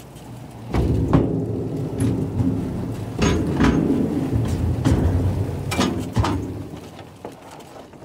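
A golf cart rolling across the steel deck of a truck scale: a low rumble with scattered knocks and rattles that starts about a second in and fades out near the end.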